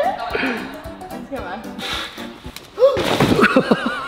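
A gymnast landing a tuck back dismount from the parallel bars onto a thick crash mat: a sudden thud about three seconds in, followed at once by excited shouting, over background music.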